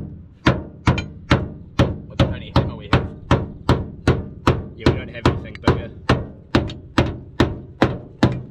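Claw hammer beating the sheet-metal lip inside a Nissan R33 Skyline's rear wheel arch, in steady blows about two a second. The guard lip is being knocked flat to clear wheels whose offset is aggressive for the guards.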